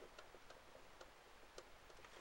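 Faint irregular ticks and light scratches of a ballpoint pen writing on paper, a few strokes a second, over near-silent room tone.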